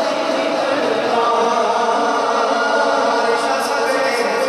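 Men's voices chanting a naat together, unaccompanied, holding long drawn-out notes.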